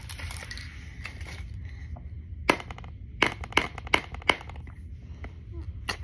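A pencil point jabbed hard against an old iPad's glass screen: about five sharp taps in quick succession in the middle of the stretch. The glass holds, leaving only pencil dots.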